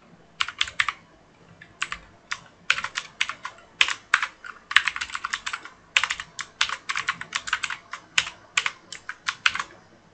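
Typing on a computer keyboard: quick runs of keystrokes with short pauses between them, starting about half a second in.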